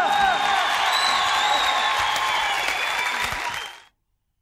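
Studio audience applause with voices mixed in, fading out shortly before the end into silence.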